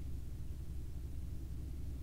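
Quiet room tone: a steady low hum with faint hiss and no distinct handling sounds.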